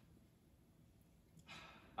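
Near silence: room tone during a pause in speech, then a man's short intake of breath about a second and a half in.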